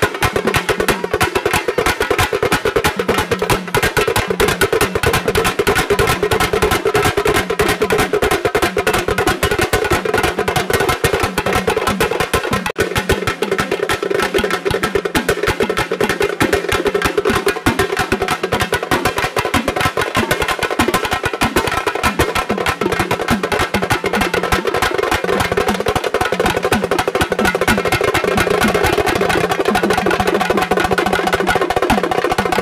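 Tamil folk drum ensemble playing a fast, unbroken beat on stick-struck frame drums and a barrel drum.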